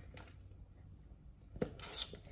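Faint handling of a plastic powder tub: a quiet stretch, then a sharp click about one and a half seconds in and a brief rubbing as its screw-top lid is twisted.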